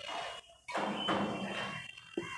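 Felt whiteboard eraser wiping marker ink off a whiteboard: two wiping strokes, a short one and then a longer one lasting over a second.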